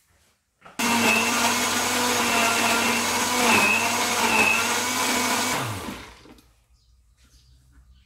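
Electric countertop blender switched on about a second in, running steadily for about five seconds as it purées fresh shrimp heads in oil into a thick paste, then switched off, its motor winding down with a falling pitch.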